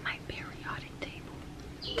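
A woman's faint whispered, breathy speech, mostly in the first second.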